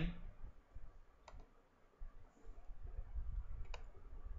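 Computer mouse clicks: one about a second in and a quick pair near the end, over a low background rumble.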